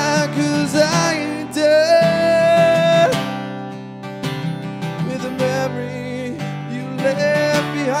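Acoustic guitar being strummed while a man sings, holding one long note that ends about three seconds in; the strumming then carries on with little or no voice until near the end.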